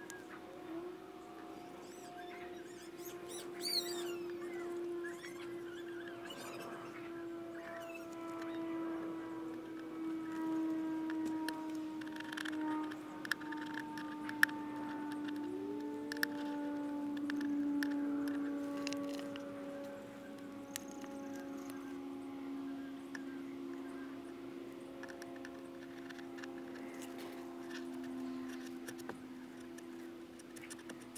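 Soft background music of long held notes that drift slowly lower, with light scratching and small ticks as vinyl letter decals are pressed onto a plastic glovebox lid.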